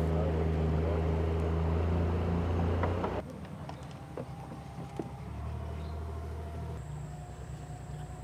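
A small river boat's outboard motor running steadily at cruising speed. About three seconds in, the sound drops suddenly to a much quieter low engine hum with a few light clicks, and a thin, steady high tone comes in near the end.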